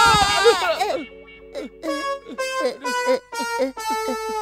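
A cartoon character's high-pitched, wavering scream in the first second, followed by playful cartoon background music of short notes.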